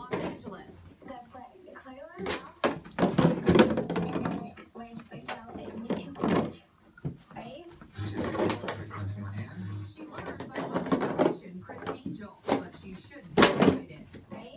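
Empty plastic milk jug crackling and knocking against the floor in irregular bursts as a German Shepherd mouths and shoves it.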